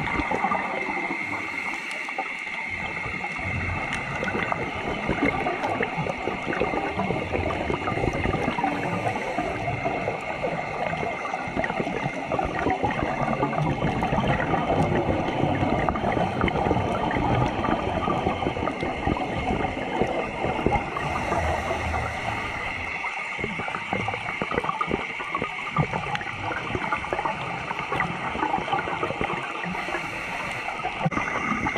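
Underwater sound picked up through a dive camera's waterproof housing: a steady watery hiss full of fine crackling clicks, with a faint steady high tone underneath.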